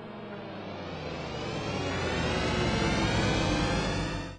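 Riser sound effect under an opening logo: a dense, many-toned swell that grows steadily louder while slowly rising in pitch.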